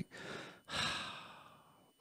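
A person sighing: a short breath, then a longer exhaled sigh that fades out over about a second.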